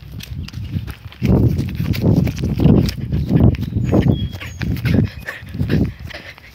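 Footsteps of someone walking with a handheld phone, the phone jostling: dull thumps about twice a second, starting about a second in.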